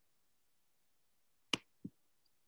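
Silence, broken about a second and a half in by a short sharp click and then a fainter, duller click about a third of a second later.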